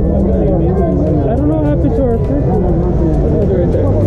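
Voices talking continuously, no words clear, over a steady low rumble of traffic and street noise.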